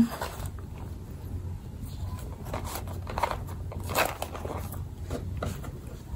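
Cloth dust bag being opened and handled, its fabric rustling and brushing as a small leather pouch is slid out, with a few sharper handling sounds about three to four seconds in.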